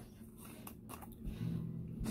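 Faint handling noises as the screw-top lid is twisted off a small concentrate jar, with a few light clicks; a faint low hum follows in the second half.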